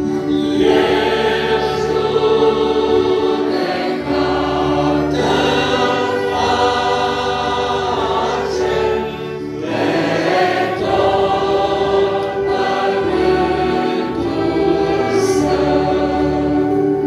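A congregation of men and women singing a hymn together, like a choir, in long held phrases with short breaks between them.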